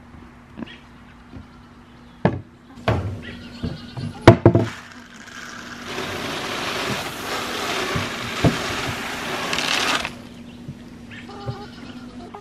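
Dry feed pouring from a plastic bucket into a wooden feeder, a steady rush lasting about five seconds from midway, which then stops. Before it come a few sharp knocks and short animal calls.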